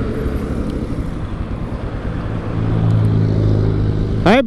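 Royal Enfield Himalayan single-cylinder engine running at low revs as the motorcycle slows and rolls to a stop, its steady low hum growing louder in the second half.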